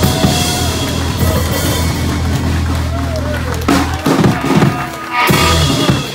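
Small live blues band playing, with electric guitar, upright double bass and drum kit. The steady bass line breaks off a little past halfway. A voice follows, then a loud closing hit with a cymbal wash near the end as the number finishes.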